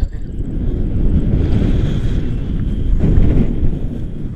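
Wind buffeting the microphone of a pole-held camera on a tandem paraglider in flight: a loud, uneven low rumble that swells about three seconds in.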